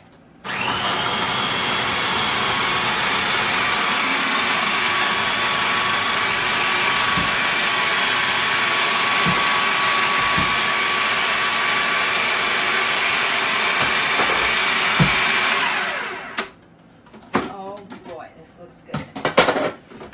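A food processor motor spins its S blade through frozen cherries to make sorbet. It starts about half a second in, runs steadily with a faint whine and a few low knocks, and shuts off well before the end.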